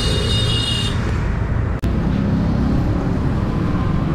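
City traffic noise with a high, steady horn-like tone for about the first second. After an abrupt cut just under two seconds in comes riding noise from the Suzuki Access 125 scooter, its single-cylinder engine note rising as it gathers speed.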